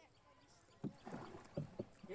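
Oars of a small rowed boat knocking and splashing in the water, a few sharp knocks about a second in and again near the end.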